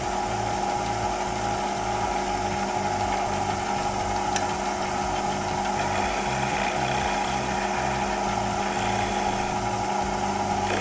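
Wood lathe running with a steady hum, a turning tool cutting the spinning end of a small wooden top's handle to make it slightly concave; the hiss of the cut grows a little louder about six seconds in.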